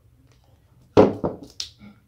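A single sharp knock about a second in, with a few fainter handling sounds after it, as the putty-sealed metal can assembly is put down.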